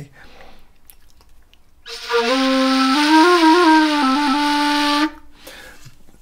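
Bamboo Persian ney, played in the Persian style with the end held between the front teeth. It gives one low, breathy held note of about three seconds, with a short higher note at the start and a few small wavers in pitch. The note starts about two seconds in and cuts off suddenly.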